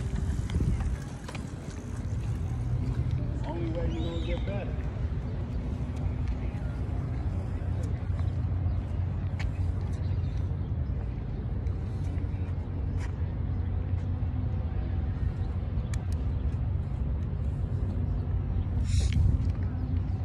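Outdoor beachfront ambience: a steady low rumble with faint distant voices about four seconds in and a few light clicks.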